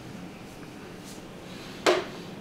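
Quiet room, then one short, sharp crack near the end as a chiropractor thrusts on a seated patient's shoulder: a joint popping during a manual adjustment.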